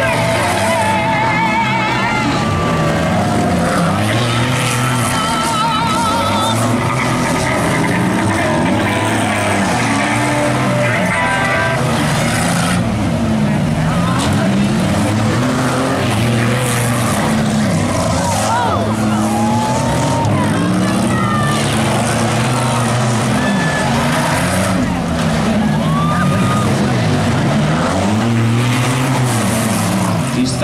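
Several stock compact race cars running hard together, their engines revving up and down through the corners in a loud, continuous mix.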